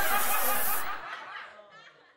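Laughter, loudest in the first second, then dying away to near silence.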